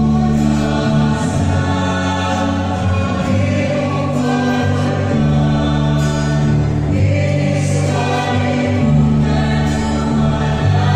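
A choir singing a slow hymn over instrumental accompaniment, with long held notes and chords that change every second or two.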